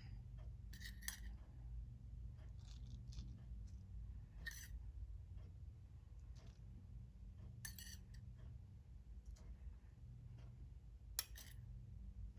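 Metal spoon scooping shredded cheese from a stainless steel bowl: four light clinks of spoon on bowl, about every three seconds, with faint scraping between, over a low steady hum.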